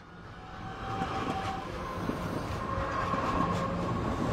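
Train running, heard from inside a passenger car: a steady rumble with a faint whine and occasional clicks, fading in and growing louder.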